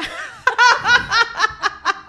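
Women laughing, a quick run of ha-ha pulses starting about half a second in.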